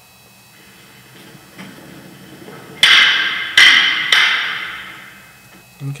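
Prop lightsaber poles clashing: three sharp strikes a little over half a second apart, each followed by a hiss that fades over a second or two.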